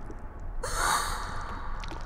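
A short, sharp gasp about half a second in, over a steady low rumble.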